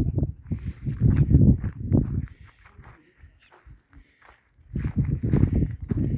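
Footsteps crunching over dry ground and brush close to the microphone, irregular and heavy in the low end; they stop a little over two seconds in and start again near the end.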